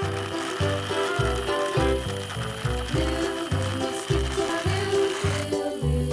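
Background music with a steady beat, over the clicking, whirring gears and propeller of a plastic toy plane. The mechanical clicking stops shortly before the end while the music carries on.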